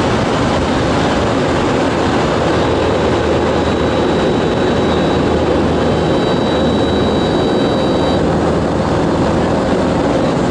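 Steady drone of a light aircraft's engine and rushing air, heard from inside the cockpit in flight, with a faint high whistle for a few seconds in the middle.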